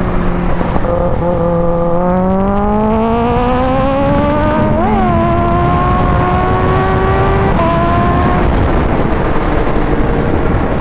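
Heavy wind rush on the microphone at highway speed, over a Kawasaki Ninja H2's supercharged inline-four whose engine note rises steadily as the bike accelerates. The pitch jumps briefly about halfway through, then the note breaks off and settles lower near the end as the throttle eases.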